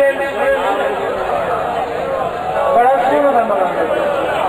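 A crowd of men's voices talking over one another at once, loud and overlapping, with no single voice standing out.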